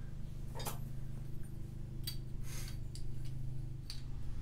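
A few light metallic clicks and a short scrape as a hand tool tightens a threaded female air fitting onto an air hose end, over a steady low hum.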